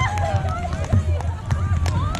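Indistinct voices of beach volleyball players calling out on the sand, over a steady low rumble, with scattered sharp ticks.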